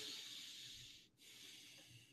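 A man's faint breathing close to the microphone: a longer breath fading out about a second in, then a softer second breath.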